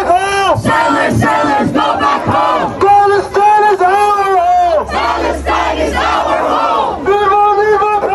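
A protest crowd chanting a slogan in loud, repeated rhythmic phrases, led by a voice shouting through a megaphone.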